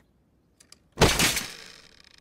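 A sudden crash about a second in, fading out over nearly a second: a cartoon sound effect of a man and his wheelchair hitting the floor. Two faint clicks come just before it.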